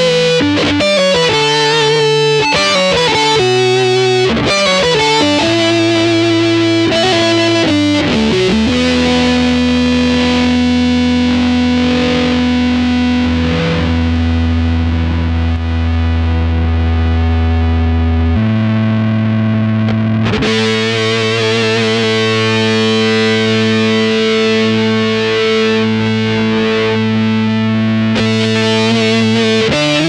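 Electric guitar played through a Keeley Octa Psi fuzz and octave pedal, with a heavily distorted tone. A quick run of notes for the first eight seconds or so gives way to long held notes, which change once just past the middle.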